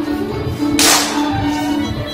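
Scottish dance band recording playing a reel at a steady tempo, with a single sharp crack about a second in.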